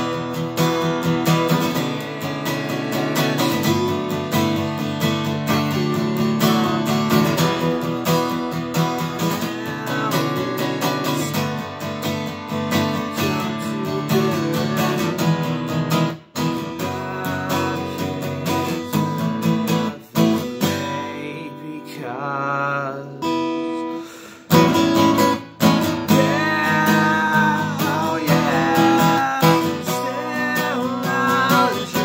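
Taylor acoustic guitar played solo in G-sharp minor, strummed and picked chords that pause briefly a few times.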